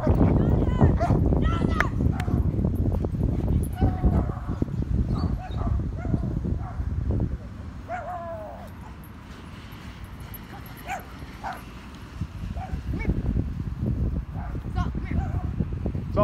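Dogs barking and yipping on and off, in short pitched calls, over a low rumble that fades about halfway through.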